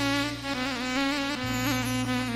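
Arabic keyboard instrumental fill: a reedy, buzzy lead melody with small ornamental turns, held over a steady low bass drone, between the singer's sung lines.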